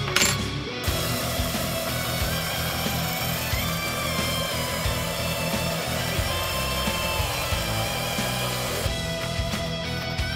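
Heavy metal music with electric guitars throughout. From about a second in until about nine seconds, a bench belt sander runs under the music, grinding a metal tube that a cordless drill spins against the belt.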